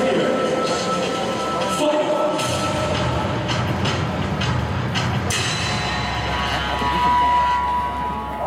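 Stadium background sound: crowd noise mixed with public-address sound, with a few short sharp knocks or claps in the middle. From about five seconds in, a chord of held tones sounds over it.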